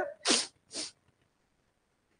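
A man sneezing: two short bursts in the first second, the second one softer.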